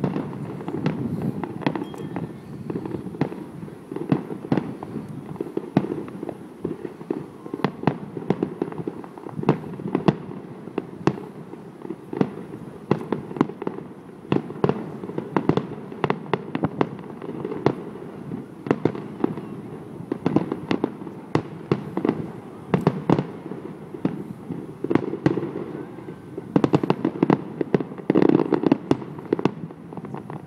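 Aerial fireworks shells bursting in a steady run of bangs and crackles, growing into a rapid cluster of bangs near the end.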